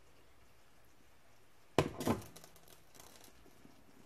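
A few faint seconds, then two sharp clinks close together about two seconds in, followed by a few lighter rattles: a stainless pot with a glass lid being lifted away and set down, the lid clinking.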